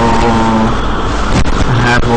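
A man's voice in two drawn-out, level-pitched hesitation sounds like "uhh", one at the start and one near the end, over a loud, steady background hiss.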